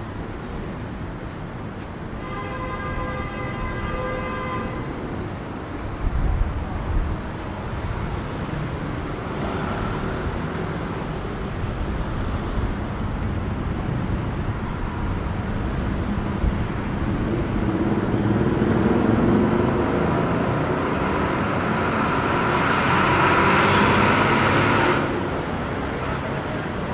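Busy road traffic with motor vehicles passing. A vehicle horn sounds for about three seconds near the start. Near the end a loud rushing vehicle noise builds and then cuts off sharply about a second before the end.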